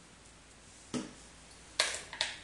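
Two short sharp plastic clicks, about a second in and a louder one near the end, from handling an e-liquid dropper bottle and vape tank while filling it.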